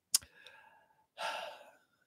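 A single sharp click, then a man's breathy sigh, a soft outward breath lasting about half a second.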